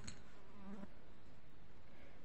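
A steady, faint buzzing background noise with a short click at the start.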